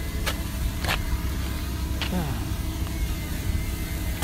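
Wind buffeting the microphone in a steady low rumble, under the faint steady whine of a DJI Mini 2 drone's propellers as it hovers. A few sharp clicks come about a second apart.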